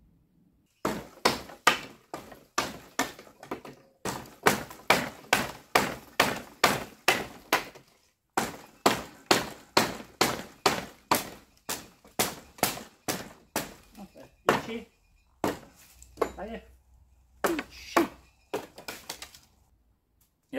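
Rapid series of sharp blows, about three a second with a few short breaks, on the boards of an old wooden picket fence as it is knocked apart.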